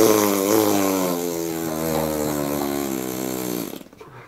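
A person blowing a long raspberry, lips buzzing loudly for nearly four seconds, the buzz sinking slightly in pitch and fading a little before stopping just before the end.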